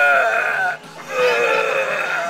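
A high-pitched human voice giving two long, wavering, wailing cries, each just under a second, with a brief break between them.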